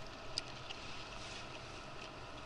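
Water lapping gently against an inflatable kayak as it drifts, with a couple of faint ticks in the first second.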